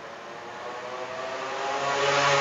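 Engine of a passing motor vehicle: a steady hum that grows steadily louder.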